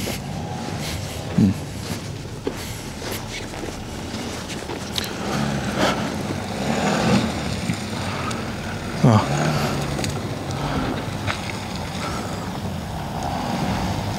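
Volkswagen Touareg's 3.0 TDI V6 diesel engine running at low revs with a steady low drone as the SUV crawls slowly over deep ruts in mud. Brief voices from people standing nearby come through a few times.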